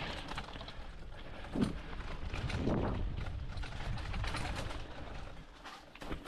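Mountain bike rolling fast down a dirt trail: tyres running over dirt and leaf litter, with the bike rattling and knocking over bumps throughout. Two brief low hoot-like sounds come about a second and a half and three seconds in.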